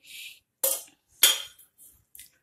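Steel spoons clinking in a steel bowl while scooping sticky sesame-jaggery mixture: a short scrape, then two sharp ringing clinks about two-thirds of a second apart.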